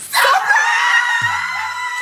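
A woman's high-pitched excited scream that starts suddenly and is held on one long note, over music with a low beat.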